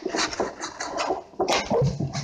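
Paper leaflets rustling and crinkling as they are handled right against the microphone, a quick run of irregular crackles.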